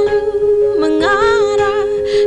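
A female singer's voice singing a wordless, humming-like melody with vibrato and gliding pitch over held accompaniment notes.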